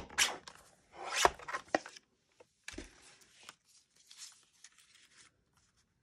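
Fiskars sliding paper trimmer cutting a piece of card: a short stroke of the blade along its rail right at the start and another about a second in, with a couple of knocks against the table. Then fainter paper rustling as the cut piece is handled.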